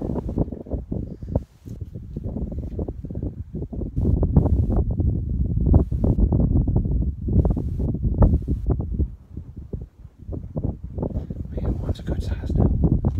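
Wind buffeting the microphone: a low, uneven rumble that swells and fades in gusts, loudest in the middle.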